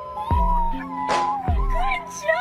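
A puppy howling: one long, wavering, high call that sags in pitch near the end, over background music with a bass beat.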